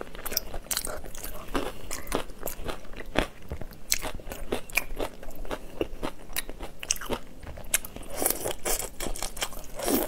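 Close-miked eating sounds: a person biting and chewing shell-on shrimp, with many crisp crunches and clicks throughout and a denser run of crunching near the end.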